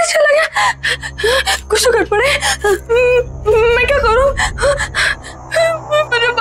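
A woman gasping and whimpering in fright, in short broken cries without words, over a low steady hum that comes in about half a second in.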